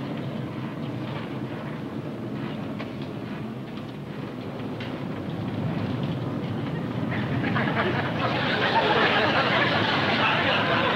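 Steady drone of airliner engines heard inside the cabin, with the rough, rattling rumble of a plane in turbulence. From about seven seconds in it grows louder and a hissing wash of noise joins it.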